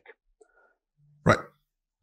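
Near silence, broken about a second in by one short spoken word, "right".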